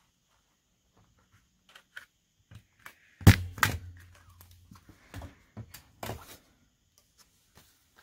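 A hand stapler pressed down once with a loud clunk about three seconds in, fastening a paper tab to a journal page, followed by a few lighter knocks and clicks as the stapler and paper are handled on the table.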